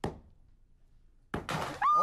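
A dull thunk, then about a second and a half in a sharp pop as the cork shoots out of a wine bottle, followed by a short burst of noise and the start of a person's startled yell near the end.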